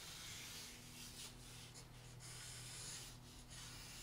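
Faint scratching of a graphite pencil drawing on sketch paper, in a few short strokes.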